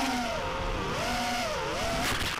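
Brushless motors and 5-inch three-blade propellers of a QAV210 FPV quadcopter whining, the pitch dipping and rising a couple of times as the throttle is worked.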